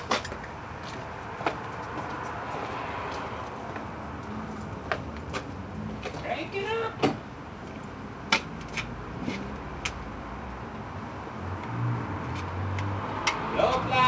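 Scattered knocks and clicks over a steady background, then a low engine hum coming in near the end as the Suburban's diesel begins to run on its newly fitted rebuilt starter.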